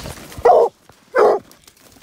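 A hunting hound barks twice, loud and short, at a hole in a rock pile. The barking is the hound baying at the den where the bobcat it trailed has holed up.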